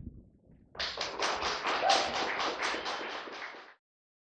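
Small audience applauding, many separate claps, starting about a second in and cut off abruptly just before the end.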